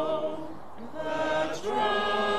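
A small group of mourners singing a hymn together without accompaniment. A held note fades just after the start, and after a short breath the next line begins about a second in.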